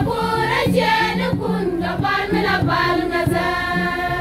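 A women's choir singing a hymn together over a low accompaniment whose notes step from pitch to pitch.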